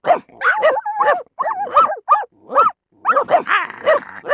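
Dogs barking and yipping in quick succession, several short, arching calls a second, some overlapping at different pitches, with a few brief silent breaks.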